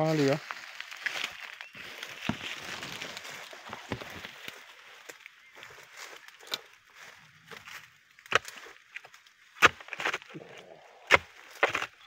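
Long-handled harvesting blade chopping into the stalks at the base of a young oil palm to cut out a ripe fruit bunch. First there are a few seconds of soft rustling, then about five sharp, uneven strikes in the second half.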